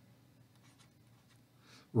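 Faint tapping and scratching of a stylus writing on a tablet screen, a few light strokes spread through the pause.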